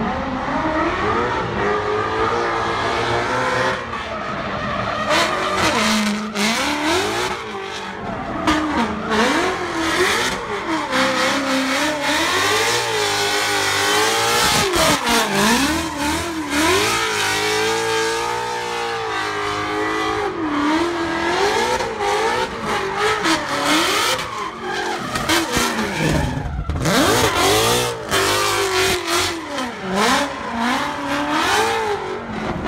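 Ford Mustang drift car's engine revving up and down over and over as it drifts, with the screech of the spinning rear tyres.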